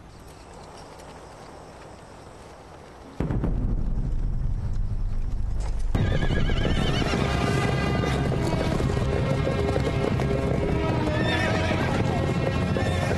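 A troop of cavalry horses galloping, with hooves clattering and horses neighing, over dramatic film music. After a quiet start the music comes in suddenly about three seconds in. The hoofbeats and neighing join it about three seconds later.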